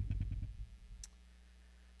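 Handling noise at a wooden pulpit, picked up close by its microphone: a cluster of low thuds and several sharp clicks in the first second, then one more click about a second in.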